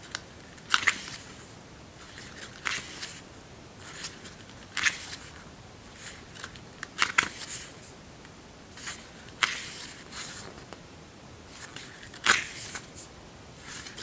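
Pages of a paperback booklet being turned by hand, each turn a brief paper rustle, about one every two seconds.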